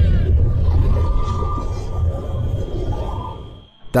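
Heavy, steady low rumble from abandoned-tunnel footage, with faint wavering high tones over it: the claimed EVP, which sounds like a bird cawing. It fades out shortly before the end.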